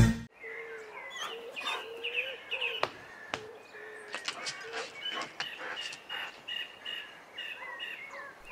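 Birds chirping and calling outdoors, many short overlapping chirps through the whole stretch, with two sharp clicks about three seconds in.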